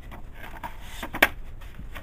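Paper dust jacket being slid back from a hardcover book: soft rubbing and rustling of paper against the cover, with one sharp tap a little past a second in.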